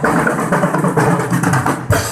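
Marching band drums playing loudly in a dense, continuous run.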